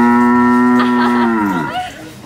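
An animatronic cow's recorded moo, set off by pushing its button and played through the figure's speaker: one long call, held steady, then dropping in pitch and fading out about one and a half seconds in.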